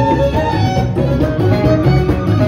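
Amazigh rways wedding music: a rribab (one-string bowed fiddle) plays a sliding melody over plucked lutes, including a banjo, with a pulsing low beat beneath.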